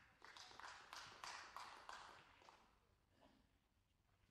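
Brief, light applause from a handful of people in a snooker arena, swelling in the first second or two and dying away after about two and a half seconds.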